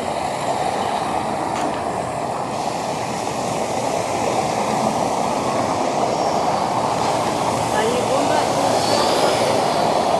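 Steady rushing splash of a large fountain's jets falling into its basin.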